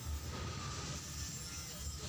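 Honda TMX 125's single-cylinder four-stroke engine idling steadily with a low, even pulse, just after being started following a clutch lining replacement.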